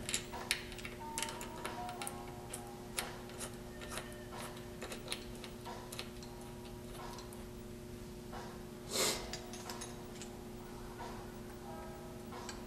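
Light scattered clicks and taps of a disc brake caliper, its bolts and washers being handled as the caliper is fitted back onto a recumbent trike's spindle, over a steady low hum. A short louder noisy burst comes about nine seconds in.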